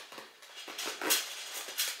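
Metal zipper on a clutch bag being pulled, with short rasps about a second in and near the end as it catches: the zipper sticks instead of running smoothly.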